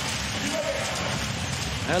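Basketball being dribbled on a hardwood court, a run of repeated bounces over steady arena crowd noise.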